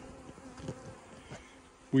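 Honeybees buzzing around an open hive, a steady low hum.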